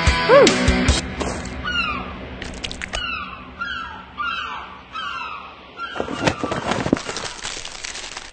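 A rock music intro ends in the first second. Then a bird gives a quick series of short, falling calls for a few seconds. Near the end comes the crinkling of a plastic snack bag being handled.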